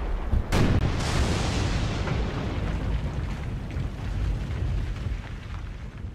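Cinematic explosion sound effect: a sudden blast about half a second in, then a long low rumble that slowly dies away near the end.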